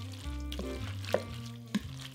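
A spoon stirring a wet batter of corn, creamed corn, egg and chopped shrimp in a bowl: a continuous squelchy stirring with a couple of sharp clinks of the spoon against the bowl, over steady background music.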